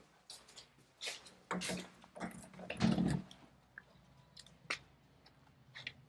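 Footsteps on a hard floor with scattered light clicks and knocks, including the latch and swing of a door being unlatched and pushed open.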